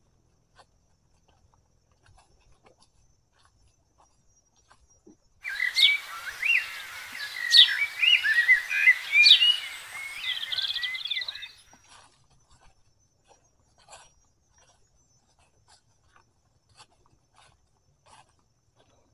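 A songbird singing loudly for about six seconds, a quick run of warbling whistled notes with sharp upward flicks, starting and stopping abruptly near the middle. Around it, faint scattered crunches of footsteps on dry fallen bamboo leaves.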